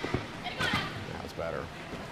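Thuds from a gymnast vaulting: a few sharp knocks of feet, springboard and mat, with faint voices in the background.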